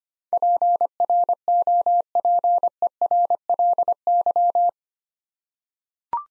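Morse code sidetone: one steady beep keyed in dots and dashes at 25 words per minute, spelling the word "properly" a second time. It stops about three-quarters of the way in.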